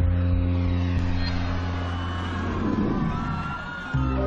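Dramatic underscore of a TV documentary: a steady low drone under a rumbling noise that slowly fades, with a faint rising tone near the end.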